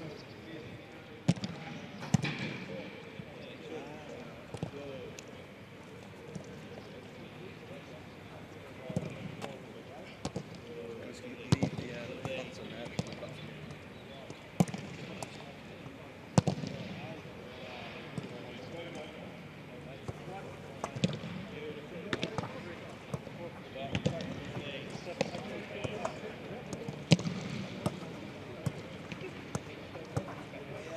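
Footballs being kicked in passing drills: irregular sharp knocks of boot on ball, several seconds apart, with faint players' voices behind.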